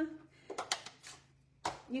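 A few light taps of a clear stamp on its acrylic block against the ink pad and desk about half a second in, then one sharp click near the end. A sung note trails off at the start.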